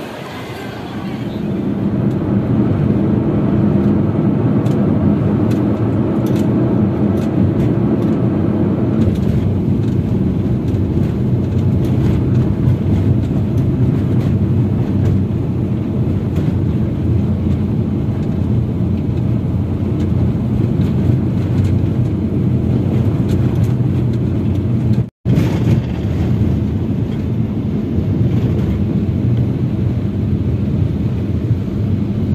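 Steady low road and engine rumble inside a moving car's cabin. The sound cuts out for an instant about five seconds before the end.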